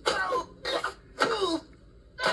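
Animated cartoon squirrel's vocal effects, three short cries each sliding down in pitch, played through a television speaker.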